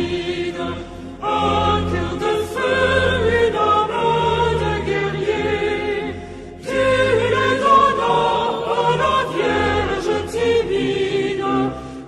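A choir singing a French hymn in sustained phrases, with short pauses about a second in and about six and a half seconds in.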